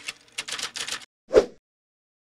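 Sound effect for an animated logo: a quick run of about half a dozen sharp clicks as the pieces come together, then one louder hit with a low thump.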